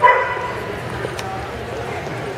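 A dog barks once, a single short, loud bark right at the start, over the murmur of people talking in the hall.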